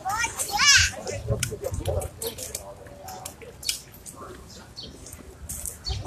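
Indistinct voices of people around. A high-pitched voice rises and falls in the first second, then fainter voice fragments follow, with scattered light clicks and taps throughout.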